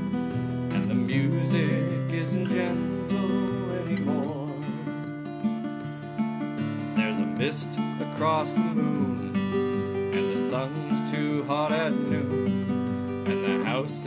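Seagull Natural Elements Mini Jumbo acoustic guitar with a solid spruce top, strummed in steady chords, while a man sings a slow song over it in phrases.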